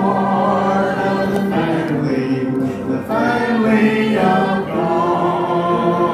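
Church congregation singing together, the voices holding long, steady notes.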